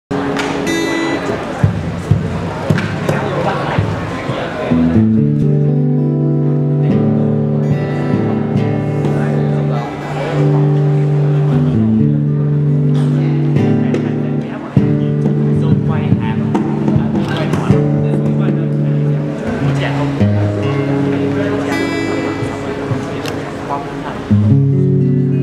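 Two acoustic guitars playing a duet of held, ringing notes, starting about five seconds in after a few seconds of noise from the hall.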